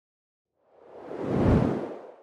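A single deep whoosh sound effect for a TV transition, swelling up out of silence about two-thirds of a second in, peaking around a second and a half, and fading away near the end.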